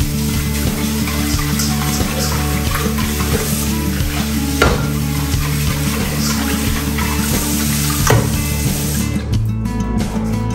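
Tap water running into a pot being rinsed in a stainless steel kitchen sink, with two sharp knocks of the pot against the sink, about halfway through and again near the end; the water stops shortly before the end. Background music plays underneath.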